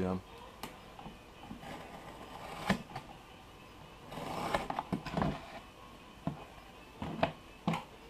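A knife cutting through woven cloth fire hose on a plywood board: scattered sharp clicks and taps, with a longer stretch of scraping about halfway through.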